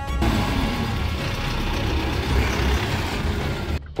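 Background music with a loud, steady rushing noise and a low rumble underneath, cutting off suddenly near the end.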